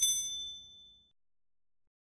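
A notification-bell ding sound effect for the subscribe bell being clicked: a bright, high chime that rings out and fades within about a second.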